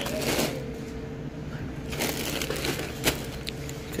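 Crinkling plastic of a large multipack bag of chips being handled, in bursts near the start and again about halfway through, with a sharp click a little after three seconds, over a steady faint hum.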